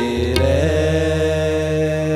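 Sikh kirtan music: harmonium and voices holding a long sustained chord. A single tabla stroke comes just under half a second in, and the voice slides up into the held note.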